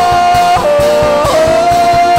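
Live worship band music with electric guitar: one long held melody note that drops in pitch about half a second in and comes back up just after a second, over a fast, steady bass pulse.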